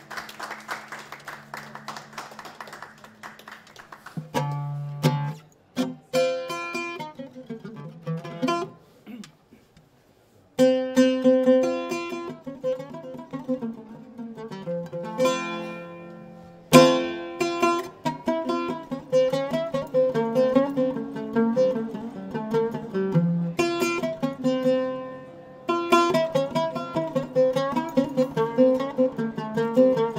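Solo music on a plucked string instrument, played live: runs of individually plucked, ringing notes. The playing pauses briefly around ten seconds in and resumes louder.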